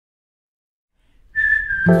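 Silence, then about a second in a high whistled note starts and holds steady. Near the end, backing chords of a piece of music come in under it.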